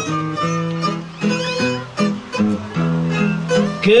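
Guitar playing a plucked melody as the instrumental interlude of a Portuguese cantoria between sung verses. A man's singing voice comes back in at the very end.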